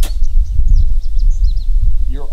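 A single sharp knock as a steel shovel is driven into a pile of sandy tailings, followed by small birds chirping faintly over a loud, uneven low rumble.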